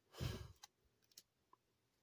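A short breath or sigh about a quarter second in, then a few faint clicks of plastic card sleeves being handled as trading cards are shuffled.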